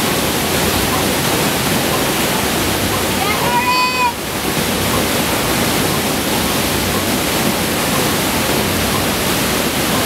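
Pumped water of a FlowRider wave machine rushing steadily up the ride surface. A single short high-pitched call rises and holds a little after three seconds in.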